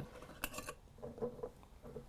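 Metal screw lids handled and set on glass mason jars: a quick cluster of clicks and clinks about half a second in, then softer handling sounds.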